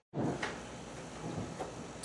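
A brief dropout at an edit, then low room noise in a classroom with a couple of soft knocks or shuffles.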